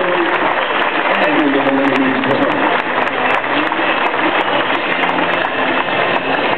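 Steady hubbub of a large crowd talking among themselves in a tennis stadium, a continuous wash of many voices with no single voice standing out.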